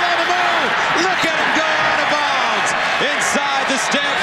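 A man's voice commentating over steady stadium crowd noise.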